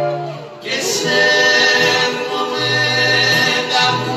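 Live Greek song with acoustic guitar and bouzouki: a singer comes in just under a second in and holds long notes over the accompaniment.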